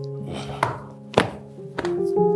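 Background music of held keyboard chords, with three sharp thuds about half a second apart as a cloth is beaten down onto a fabric sofa while dusting it.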